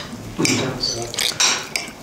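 A knife and fork scraping and clicking against a ceramic dinner plate as a steak is cut, in a few short strokes.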